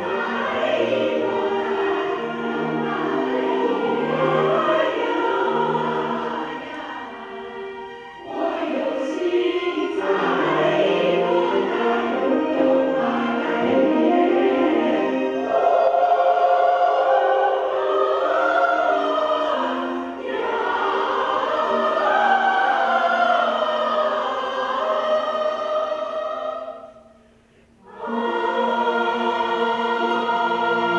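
A choir singing in long phrases, with a brief pause about three seconds before the end, when the sound falls almost to silence before the choir comes back in.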